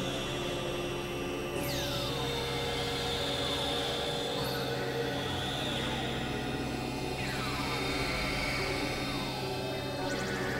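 Experimental electronic drone music from synthesizers: layered held tones over a steady low hum, crossed by falling pitch sweeps that recur every two to three seconds.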